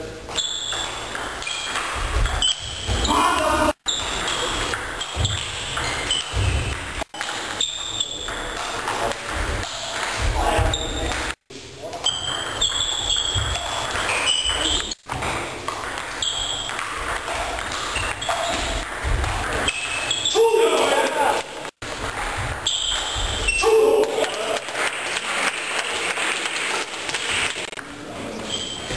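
Table tennis rallies: the ball clicking off the bats and bouncing on the table in quick exchanges, ringing a little in the hall.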